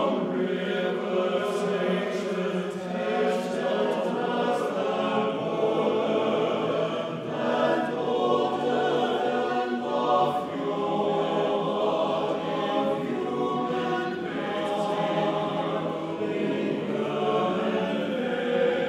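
Mixed-voice chamber choir singing, with several voice parts sounding at once in overlapping lines.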